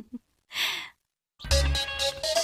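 A single short sigh about half a second in. Then, after a moment of silence, background music with a deep bass beat and guitar starts near the end.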